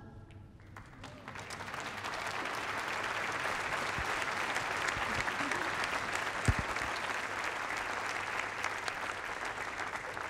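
Audience applauding. The clapping builds over the first couple of seconds as the last sung chord dies away, holds steady, and tapers off near the end, with one sharp knock a little past the middle.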